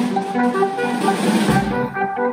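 Small live ensemble of winds, violin, electric guitar and percussion playing a pulsing pattern of short repeated notes.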